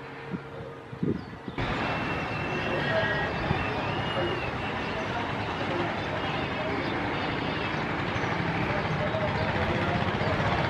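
A steady rush of outdoor noise with indistinct voices in it, starting abruptly about a second and a half in.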